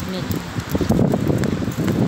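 Indistinct talk from the woman filming on a phone, with rustling noise on the microphone.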